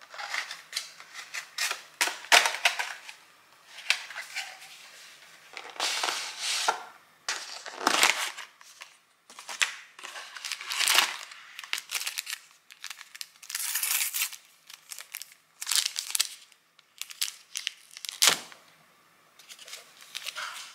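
Plastic food packaging being handled: a plastic tray and container of a meal kit opened and sealed plastic sachets moved about, in an irregular string of crackles and rustles. The sharpest snaps come about 2 seconds and 8 seconds in.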